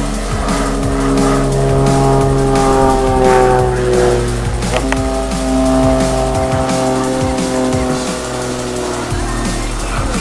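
Aerobatic propeller plane's engine droning through a manoeuvre, its pitch sliding slowly down. About five seconds in the drone breaks off and comes back higher, then falls again.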